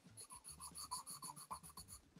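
Faint, rapid back-and-forth pencil strokes scratching on sketchbook paper, about seven strokes a second, starting just after the start and stopping near the end.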